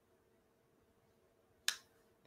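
A single short, sharp click near the end, over quiet room tone with a faint steady hum.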